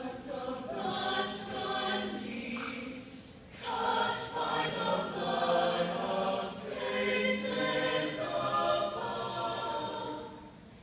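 Mixed youth choir singing in parts, led by a conductor. A phrase begins at once, eases off briefly about three seconds in, then a fuller, louder phrase follows until the voices drop away near the end.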